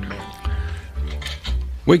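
Indistinct talk away from the microphone, with faint ringing string notes and low thumps and rumble, as a bluegrass band sits between songs.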